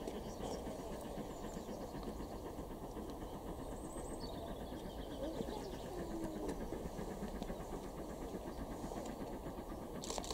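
Station platform ambience: a steady low background rumble with faint, distant voices of waiting onlookers.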